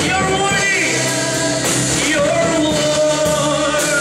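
A man singing a gospel worship song into a microphone over a live band with drums and bass, holding one long note about halfway through.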